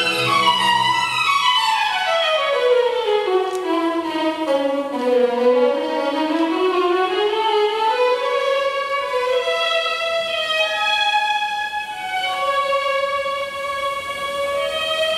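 Classical ballet music led by a solo violin. The violin plays a long descending run over the first five seconds, then climbs back up and continues with held notes.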